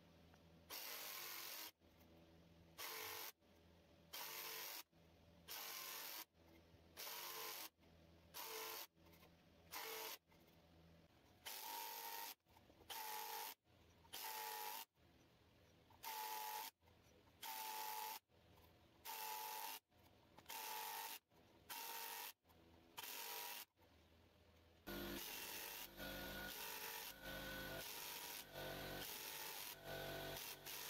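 Handheld router cutting finger joints in a wooden jig, starting and stopping in short cuts about once a second, then running on without a break near the end.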